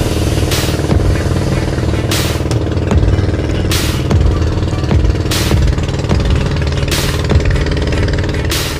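Motorized outrigger boat's engine running steadily under way, with a short rush of water about every second and a half as the hull meets the waves.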